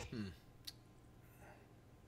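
A man's short "hmm", then near silence broken by a single faint, sharp click less than a second in.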